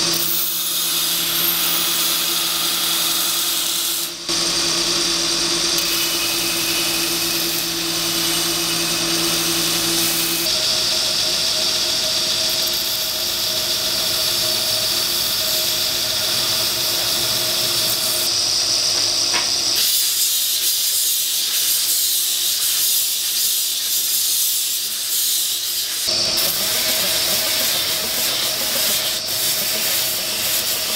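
Belt grinder running while knife handle scales are ground against the abrasive belt: a steady motor hum under the hiss of the belt on the material. The tone changes abruptly several times as different shots are cut together.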